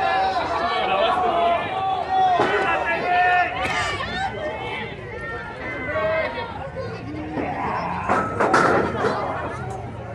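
Lucha libre crowd shouting and chattering, many voices overlapping, with a louder outburst of noise about eight and a half seconds in.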